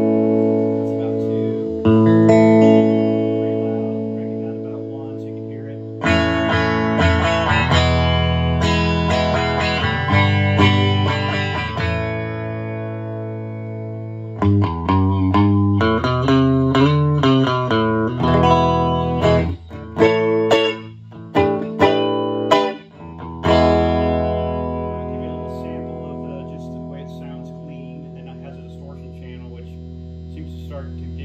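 Electric guitar played through a late-1970s Tusc JT450 amplifier and 4x12 cabinet with Fane speakers, its volume set at about one, recorded on a phone microphone. Two strummed chords ring out and fade. Then comes a stretch of chords and single-note runs, choppy with short stops, and it ends on a chord left to ring and die away.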